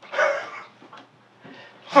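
A small chiweenie (chihuahua–dachshund mix dog) barks once, briefly, just after the start.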